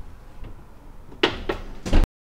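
A built-in oven's wire rack being pushed in and the oven door shut: three clunks in the last second, the last the loudest.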